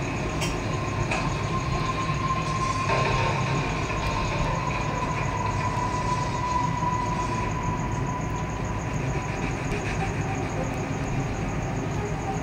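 Steady low mechanical hum with a thin, even whine on top that fades out near the end.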